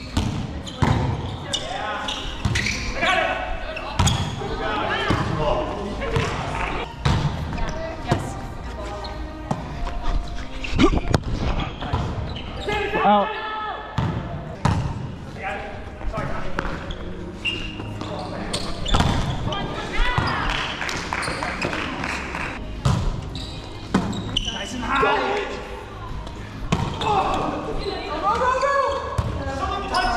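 Indoor volleyball play on a hardwood gym floor: sharp slaps of hands and arms hitting the volleyball and the ball bouncing on the floor, echoing in the large hall, while players call out and talk throughout.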